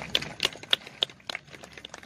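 Irregular sharp clicks and taps, several about a third of a second apart, from a line of decorated tbourida horses standing and shifting: hooves on hard ground and their harness.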